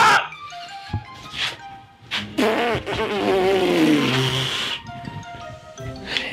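A man's long, loud yell of pain, falling steadily in pitch, after a sharp smack of a tactical whip on bare skin a little over two seconds in. Background music throughout.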